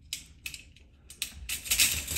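Metal parts of a Smith & Wesson Response carbine clicking and clinking as they are handled: a few scattered clicks, then a quicker run of clicks in the second half.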